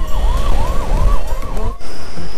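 A siren sounding a fast yelp: a tone that sweeps up and down about three times a second, over the low rumble of a moving motorcycle. It cuts off abruptly near the end.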